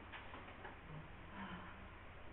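Quiet room tone with a few faint, light ticks or taps.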